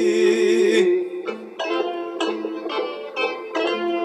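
A male voice holds the last sung note with a wavering vibrato for under a second, then a Greek folk band plays an instrumental break: a quick plucked-string melody over strummed guitar.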